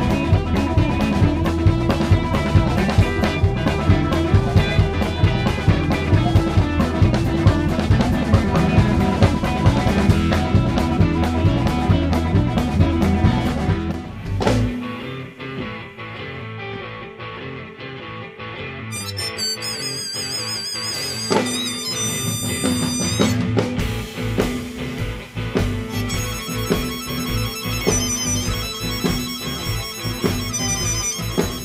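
Blues band music with electric guitar and drums. About 14 seconds in it drops suddenly to a quieter, sparser passage.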